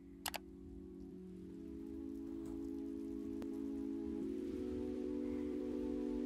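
iPhone sleep-schedule wake-up alarm playing a soft sustained musical chord that grows steadily louder, with two quick clicks about a third of a second in.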